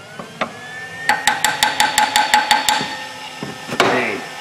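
A hammer taps quickly on a secondary air injection switch valve that is stuck closed: about ten light taps in a second and a half, then one harder hit near the end. Under the taps runs the whine of the electric air injection pump, rising in pitch for the first second and then steady.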